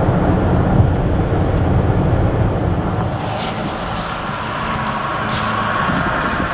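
A car driving along a road: a steady low rumble of engine and tyres, with a hiss of road noise building about halfway through.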